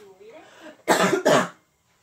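A person's voice: a soft, wavering vocal sound, then two loud coughs in quick succession about a second in.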